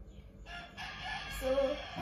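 A rooster crowing once, a single long call lasting well over a second, with a man's voice briefly over it near the end.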